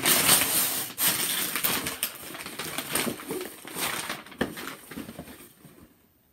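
Wrapping paper being ripped and crumpled off a gift box: a dense crackle and rustle, loudest at first and thinning out over the last couple of seconds, with one sharp snap about four and a half seconds in.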